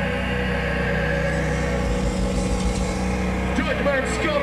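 A steady, loud drone from the band's amplifiers, a held note or feedback ringing between songs, with a short voice-like glide near the end.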